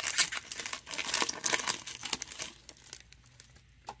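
Foil wrapper of a Panini Optic football card pack crinkling and tearing as it is pulled open by hand, a dense crackle that dies down after about two and a half seconds.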